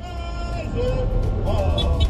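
A crowd singing together in long held notes, over a steady low rumble.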